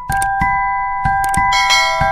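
Intro jingle of held, bell-like chime notes, with several sharp clicks as a subscribe button is pressed, and a brighter ringing bell joining about one and a half seconds in.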